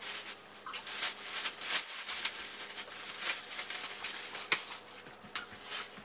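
Black plastic bin bag crinkling and rustling in irregular crackles as it is handled and tipped out, emptying a load of clothes.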